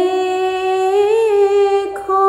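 A woman's voice chanting a ginan, a devotional hymn, unaccompanied: one long held note that lifts slightly in pitch in the middle, with a short break near the end as the next phrase begins.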